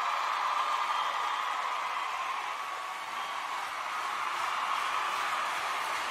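Large crowd cheering, a steady, even roar of many voices with no single voice standing out.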